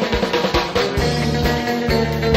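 Recorded band music with a drum kit keeping a steady beat; low bass notes come in more strongly about halfway through.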